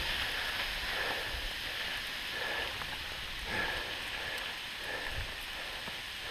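Wind blowing on the microphone outdoors: a steady hiss with uneven low buffeting, and a few soft swishes about one, three and a half and five seconds in.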